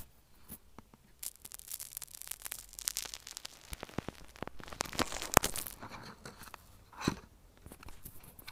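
Bubbly slime crackling, popping and squishing right against an earphone's inline microphone pressed into it, picked up through that microphone: a dense run of irregular small clicks and sticky rubbing, with one louder snap a little past halfway and another burst near the end.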